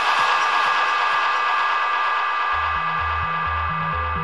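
Electro house track in a beatless breakdown: a sustained, hissy synth wash with held high tones slowly fading. About two-thirds of the way in, a pulsing synth bass line comes in, hopping between a low note and a higher one about three times a second.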